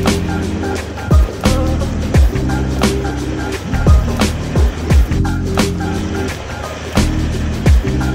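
Background music with drum hits and sustained synth chords.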